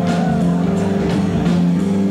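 Live band music with a steady beat, held notes over a rhythm section.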